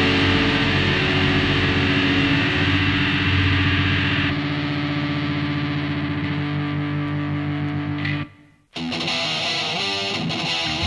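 Heavy metal recording of distorted electric guitars. About four seconds in the full band thins to sustained distorted guitar chords. These cut off just after eight seconds, and after half a second of silence distorted guitar starts the next song.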